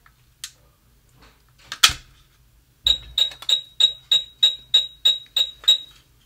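A sharp click as the battery goes into the SadoTech RingPoint driveway-alert receiver, then about a second later a run of ten short high beeps, about three a second. This is the slow beeping that signals the receiver is powering up into a factory reset, clearing all its paired sensors.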